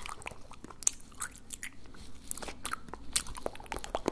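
Close-miked wet mouth and tongue sounds: irregular tongue clicks, lip smacks and pops, several a second, with no words.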